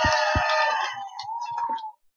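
A long, high drawn-out whoop of a cheering person, sliding down a little in pitch, fading after about a second and cutting off just before the end. A couple of low thumps sound near the start.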